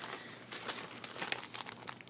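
Clear plastic crinkling in irregular crackles as a plastic-wrapped cross-stitch project is handled.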